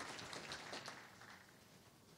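Faint, scattered claps from an audience's applause, dying away within about the first second, then near silence.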